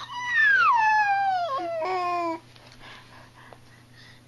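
A long, high-pitched squealing voice that climbs briefly and then glides steadily down in pitch, ending abruptly about two and a half seconds in.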